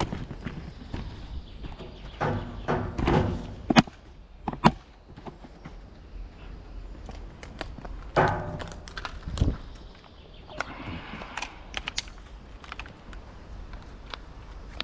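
Handling noise from an arborist's climbing harness and gear: scattered sharp clicks and clinks with short rustles, mixed with footsteps on grass.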